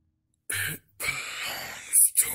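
After half a second of silence, a short harsh voice rasp, then a longer raspy, throaty sound like throat clearing that is loudest near the end.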